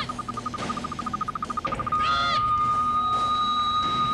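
Electronic sci-fi sound effect: a high beep pulses faster and faster until it merges into one steady tone a little before halfway, with short swooping chirps at the start and about two seconds in.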